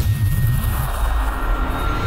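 Cinematic logo-intro sound effects: a whoosh at the start, then a rushing, rumbling swell with thin high tones held over it.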